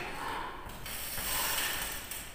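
Chalk scratching on a blackboard in short writing strokes, with a longer, louder stroke about halfway through.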